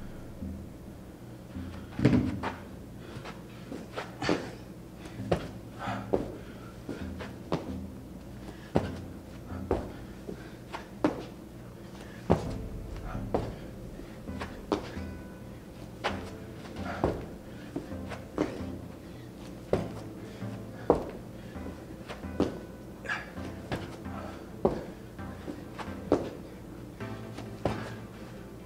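Repeated thuds of a person landing on a gym floor while doing burpees, roughly one a second, over background music.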